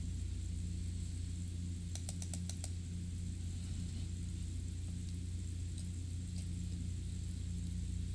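A quick run of about six computer keyboard clicks about two seconds in, over a steady low hum.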